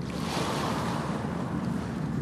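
Steady rushing sound of ocean surf, swelling briefly about half a second in.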